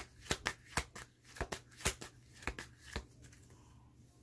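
A deck of oracle cards being shuffled by hand: a quick run of sharp card snaps, about five a second, that stops about three seconds in.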